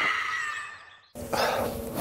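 The tail of a short musical intro sting fades out, then after an abrupt cut a man breathes hard and rubs his face with a towel, over a steady low hum.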